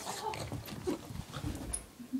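A Boston Terrier making short, irregular grunts and snuffles with a toy in its mouth, mixed with scattered clicks and knocks.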